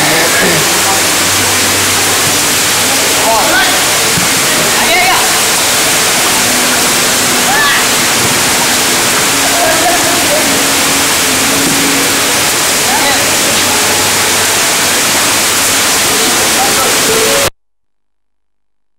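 Heavy rain pouring down, a loud steady hiss, with scattered distant shouts and voices through it; it cuts off suddenly near the end.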